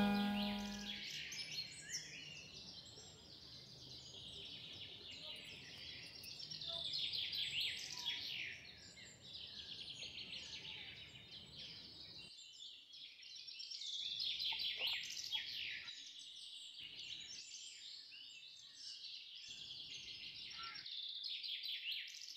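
Many small birds chirping and twittering in a steady chorus of birdsong. The tail of sitar music fades out in the first second.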